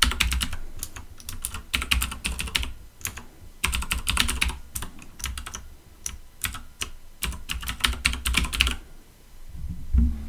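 Typing on a computer keyboard: rapid keystrokes in several quick bursts with short pauses between them, stopping about a second before the end.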